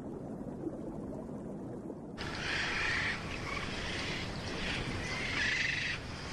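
A low, muffled water ambience, then about two seconds in a sudden switch to waves washing at the sea's surface, coming in repeated surges.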